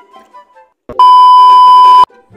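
An electronic beep tone: one loud, steady, pure pitch that starts sharply about a second in, is held for about a second and cuts off abruptly. A faint click comes just before it.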